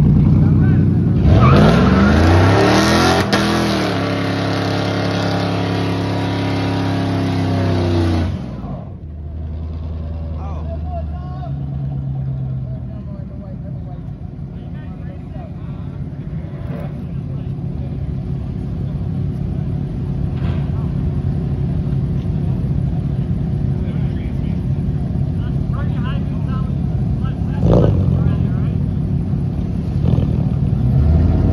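Car engine revving up hard and held at high revs with its rear tyres spinning in a burnout for about seven seconds, then dropping back to a lower rumble. A short sharp pop near the end.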